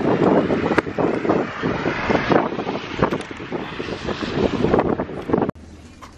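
Rain and wind on an open umbrella held just above the microphone: a loud, irregular rush of noise with many small sharp hits on the fabric. It breaks off suddenly near the end.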